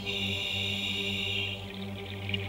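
Ambient background music of sustained drone tones, with a brighter high layer sounding for about the first second and a half.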